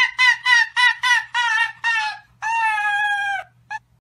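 Dog making a high-pitched, laugh-like "hehehe" call: a run of short yips about four a second, then one long drawn-out call that sinks a little in pitch, and a last brief yip near the end.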